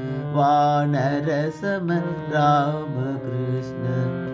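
Devotional Hindu chant (nama sankirtanam) in Indian classical style: a melodic line with wavering held notes over a steady drone. The melodic line comes in two phrases, about half a second in and again around two and a half seconds.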